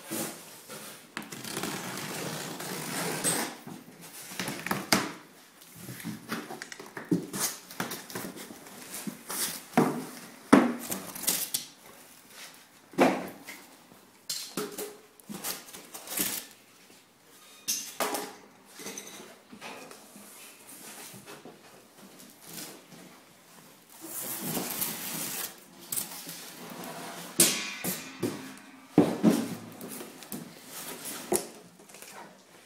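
Handling noise from opening a cardboard shipping box: packing tape being pulled off, and the flaps and foam packing inserts being moved, with scattered knocks and scrapes. There are two longer stretches of rustling and tearing, near the start and about three-quarters of the way through.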